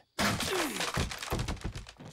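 A sudden crash with a run of clattering knocks and a falling tone underneath, a dramatic sound effect from the anime, dying away near the end.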